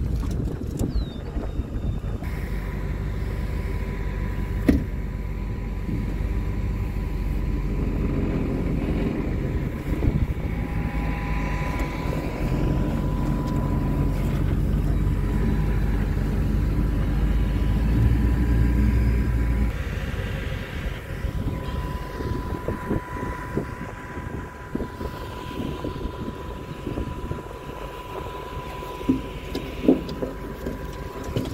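Pickup truck driving slowly across a bumpy pasture: steady engine and body rumble with a thin steady whine. The rumble eases off about two-thirds of the way through.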